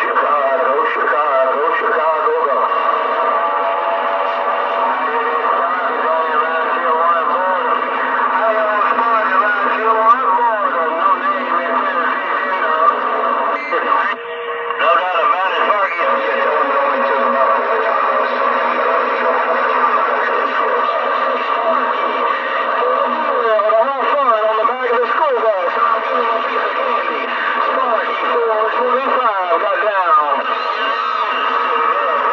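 Galaxy DX 959 CB radio's speaker receiving channel 28 (27.285 MHz): garbled voices of distant stations overlapping through static, with heterodyne whistles. A low steady tone holds for several seconds in the first half, and the signal drops out briefly about midway.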